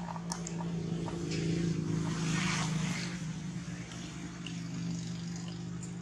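A motor engine droning steadily, growing louder around two seconds in and then easing off, as if a vehicle passes by. There are a few faint light clicks near the start.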